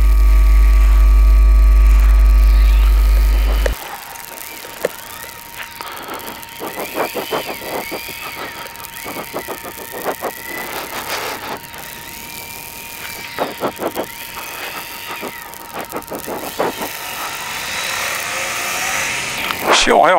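Loud electrical mains hum with a ladder of overtones in a motorcycle intercom's audio, interference picked up under high-voltage power lines. It cuts off suddenly about four seconds in, leaving much quieter riding noise with a faint steady whine.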